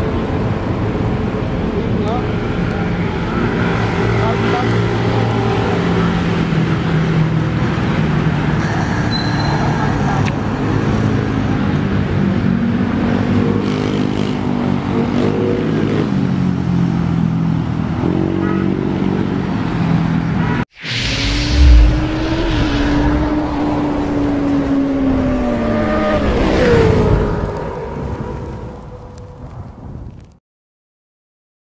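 Roadside street ambience of passing traffic with people's voices. After a sudden break about two-thirds of the way through, a vehicle passes with its engine note slowly falling in pitch, then the sound fades out near the end.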